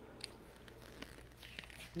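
Faint rustling and a few light clicks of a paper instruction sheet being picked up and handled.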